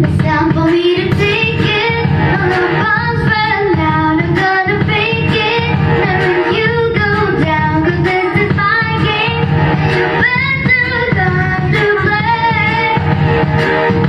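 A young girl singing a pop song into a microphone over instrumental accompaniment.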